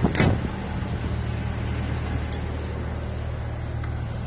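A truck's diesel engine idling steadily with a low hum. A short knock or thump comes right at the start.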